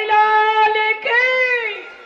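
A high-pitched voice singing a devotional melody in long held notes, the last note bending up and back down and fading out near the end.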